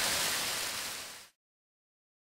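Green beans, bacon and onion sizzling in an electric wok, a steady hiss that fades out about a second in, followed by silence.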